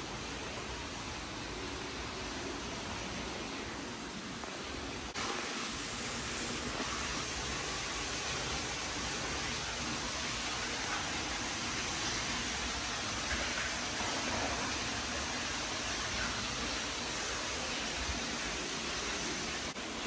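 Steady, even rushing background noise, with no distinct events; it gets a little louder about five seconds in.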